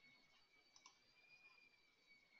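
Near silence: a faint steady high-pitched whine of electrical noise, with a couple of faint clicks a little under a second in.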